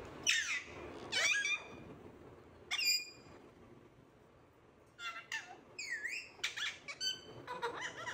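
Pet parakeets calling: three sharp, high squawks with falling pitch in the first three seconds, a short lull, then a quick run of chirps and whistled notes near the end.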